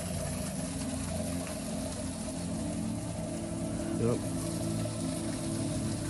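Steady low hum of a running motor, made of several held tones, with a brief sliding sound about four seconds in.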